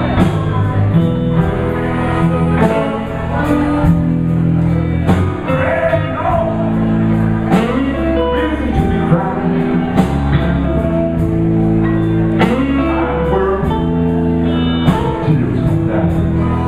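Live electric blues band playing: two electric guitars over bass guitar and a steady drum beat.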